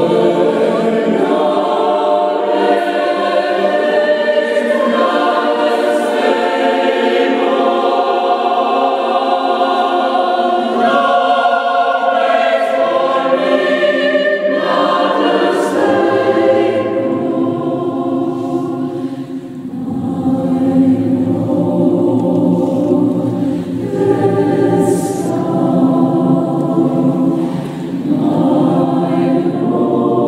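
Polyphonic choir singing sacred choral music in sustained, overlapping chords. Deeper voices join about halfway through.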